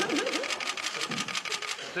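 Rapid, evenly spaced clicking of press cameras' shutters firing in bursts, about ten clicks a second, over faint voices.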